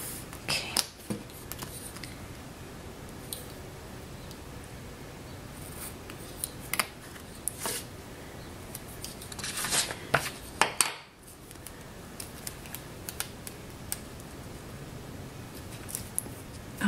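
Stickers being peeled from their backing sheet and pressed onto paper planner pages: scattered light ticks and short papery scrapes, with a cluster of louder rustles about ten seconds in.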